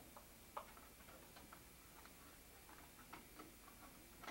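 Near silence: room tone with a few faint, irregularly spaced clicks.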